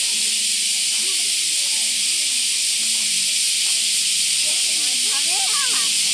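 Cicada chorus: a loud, steady high-pitched hiss that does not let up, with faint children's voices beneath it.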